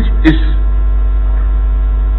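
Loud, steady electrical mains hum under a played-back recording of a man's voice. The voice sounds thin and telephone-like, says one word right at the start, then pauses, leaving only the hum.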